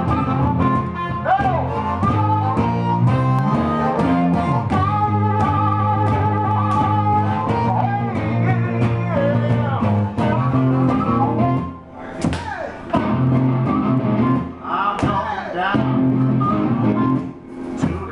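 Live acoustic blues: harmonica playing bent notes over guitar, with a suitcase used as a kick drum, stomped by foot, keeping a steady beat.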